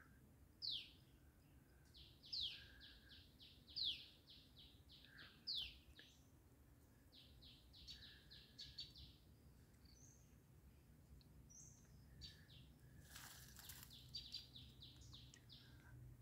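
Faint birdsong: quick runs of short high chirps, with a louder down-slurred note about every second and a half over the first six seconds, then softer runs of chirps later on.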